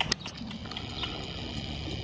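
Hoofbeats of a ridden horse on soft arena dirt, with two sharp clicks right at the start.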